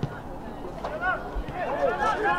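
Voices calling and shouting across a soccer pitch during play, with the sharp thud of a ball being kicked right at the start.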